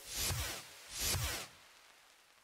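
Two short whoosh sound effects about a second apart, each swelling and fading within half a second, as the background music has just ended.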